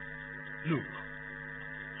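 Steady electrical mains hum and buzz, made of several unchanging tones.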